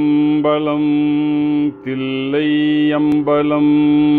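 A man chanting an opening invocation in long held notes with slides between pitches, over a steady drone.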